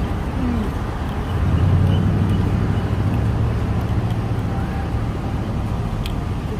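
City street traffic: a vehicle's low engine drone swells about a second and a half in and holds for a few seconds before easing off, over steady roadway noise.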